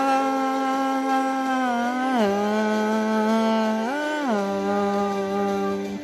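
A man's voice singing one long held vowel with no words. It steps down in pitch about two seconds in, swells up briefly around four seconds, then settles back on the lower note.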